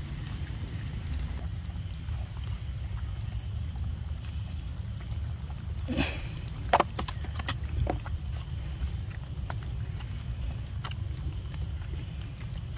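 Steady low rumble of outdoor background noise, with a few sharp clicks and knocks between about six and eight seconds in, the loudest just before seven seconds.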